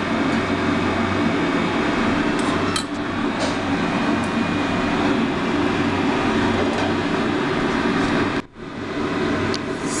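Steady mechanical hum and hiss throughout, with a couple of faint clicks about three seconds in. The sound cuts out briefly about eight and a half seconds in.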